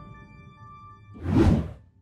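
Outro music fading on held tones, then a single whoosh sound effect that swells and falls away about a second and a half in, with a low rumble under it.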